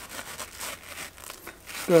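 A heated knife cutting into a sheet of foam, with irregular scratchy crinkling and rubbing as the foam is flexed and worked by hand.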